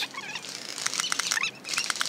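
Rustling and scattered sharp clicks of a paintball player moving fast over dry leaf litter in woods, with a few faint, brief chirps in the background.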